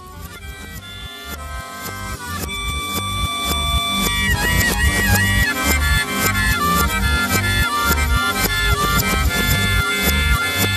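Folk-rock music with harmonica, played backwards, fading in and growing steadily louder over the first five seconds, then carrying on at full level over a regular bass beat.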